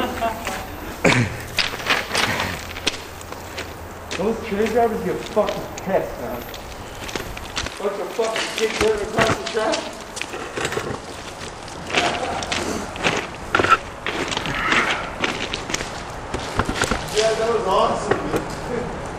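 Indistinct voices talking on and off, among short hisses of aerosol spray paint cans and scuffing sounds.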